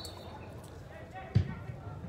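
A football struck once with a free kick: a single sharp, dull thump well past halfway through, over faint background noise.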